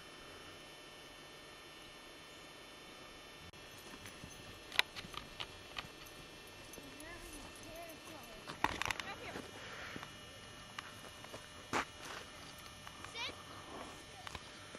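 Faint distant voices with scattered sharp clicks and knocks.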